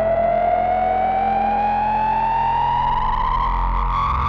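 Behringer K2 analog synthesizer droning on a sustained note through a Strymon Volante echo pedal, with a resonant whistling tone that dips at the start and then slowly rises over the steady low drone.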